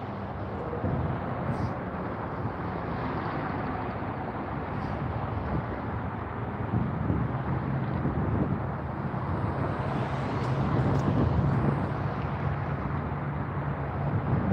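Road traffic: cars and SUVs driving past and turning onto a freeway on-ramp, a steady wash of tyre and engine noise. One engine's low hum stands out in the second half.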